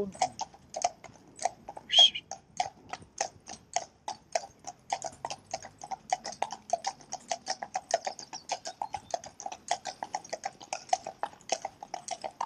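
Shod hooves of a pair of Friesian horses in harness clip-clopping on a tarmac road in a quick, even rhythm, several strikes a second. A brief louder sound stands out about two seconds in.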